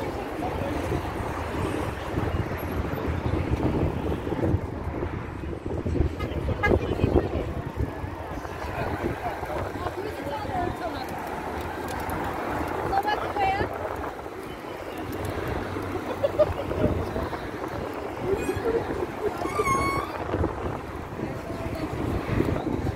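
Riders' voices chattering over a steady noisy rumble as a crowd of cyclists crosses a road bridge, with a short horn toot near the end.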